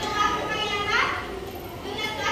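Young children's voices chattering and calling out in a classroom, high-pitched and continuous.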